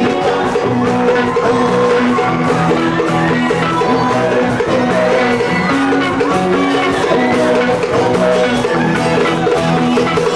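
Live Pacific island pop band playing, with acoustic guitars and bass over steady percussion and voices singing.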